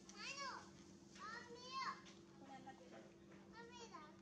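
Long-tailed macaque calls: three bouts of high, child-like squealing coos, each rising then falling in pitch, near the start, in a longer run of several calls at about one to two seconds, and again near the end. A faint steady low hum runs underneath.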